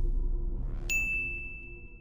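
Logo-sting sound effect: a low rumble dying away, then about halfway through a single bright ding that rings on as one high tone and slowly fades.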